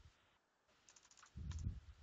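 Faint computer keyboard keystrokes: a quick run of several key clicks about a second in, as typed text is erased with the backspace key. A short low thump follows just after.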